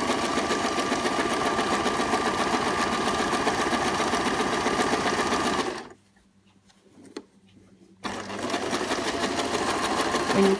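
Electric sewing machine stitching a row of shirring with a rapid, even clatter. About six seconds in it stops for roughly two seconds, with one small click in the pause, and then starts stitching again at the same speed.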